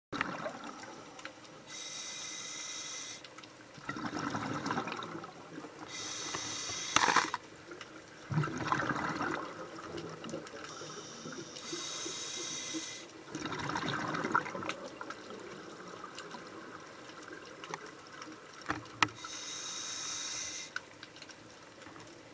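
Scuba regulator breathing underwater: a hissing inhale through the demand valve, then a bubbling burst of exhaled air, repeating every five to six seconds.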